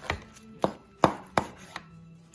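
Knife chopping through the crisp crackling skin of a rolled roast pork belly, five sharp crunches a few tenths of a second apart.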